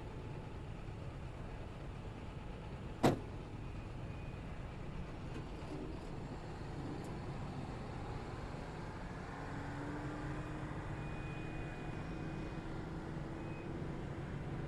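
A car door slams shut once, about three seconds in, then the taxi's engine runs steadily as it pulls away, over a low steady rumble.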